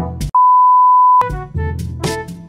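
A single steady electronic censor bleep, just under a second long, starting about a third of a second in, during which the background music cuts out. Before and after it runs jaunty background music with brass instruments.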